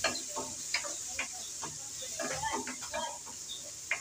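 Spatula stirring and scraping browned onions, garlic, ginger and green chillies around an aluminium karahi in a series of short strokes, over a steady hiss of frying oil.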